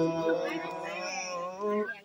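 A man's voice chanting: a held note gives way to pitches that slide and waver, and the phrase ends on a short, slightly higher note.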